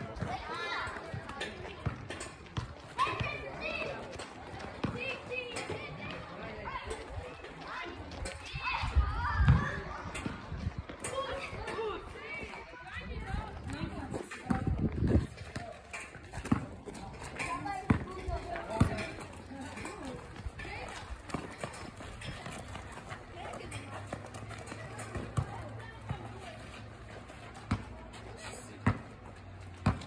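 Children's voices and shouts at play, with occasional sharp thumps of a ball bouncing on the pavement.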